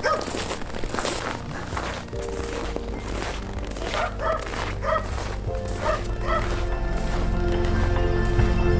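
A dog barking in short calls, once at the start and then about six times in quick succession, over steady background music. Footsteps crunch in packed snow.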